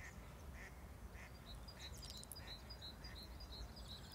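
Faint bird calls outdoors: short calls repeating about twice a second, with quicker, higher chirping alongside and a low rumble underneath.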